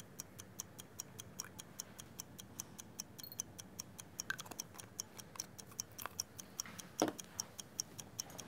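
Faint, steady, high-pitched ticking, about four ticks a second, with one louder knock about seven seconds in.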